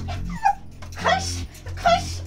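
A young woman's short, high cries of pain, three of them, each rising and falling in pitch, as she is struck with a leafy branch.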